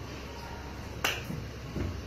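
A single sharp finger snap about a second in.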